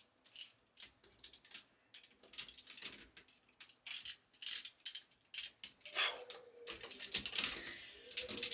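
Hard plastic toy parts clicking and clacking irregularly as a DNA Design DK-20 upgrade-kit piece is pushed and twisted at different angles against a Transformers Studio Series Devastator figure. It is a very tight fit and does not go in.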